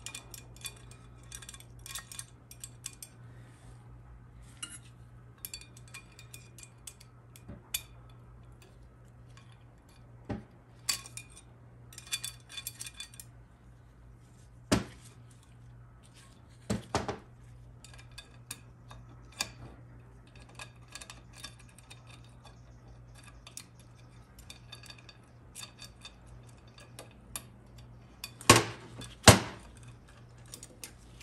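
Small steel parts (nuts, washers and cut-off bolt heads) clinking and tapping against an aluminium transmission valve body as they are fed into a stuck valve's bore and worked with a pick, with scattered sharper knocks, the two loudest near the end. A steady low hum runs underneath.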